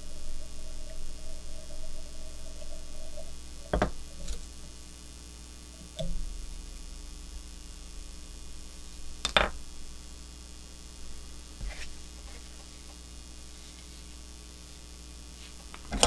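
Steady electrical mains hum, broken by three or four short sharp clicks; the loudest click comes a little past the middle.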